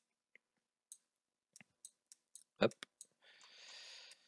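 A few faint, irregularly spaced computer mouse clicks while a chart is being navigated on screen, with a soft hiss near the end.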